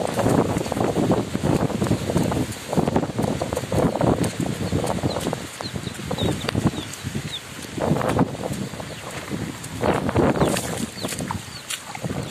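Rustling and handling noise in irregular surges from walking through grass with a phone in hand, with a few faint high chirps around the middle.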